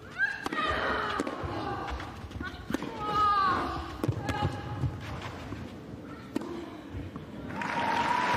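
Tennis rally: racket strikes on the ball about once a second, several shots met with loud, pitched grunts from the players. Applause swells near the end as the point is won.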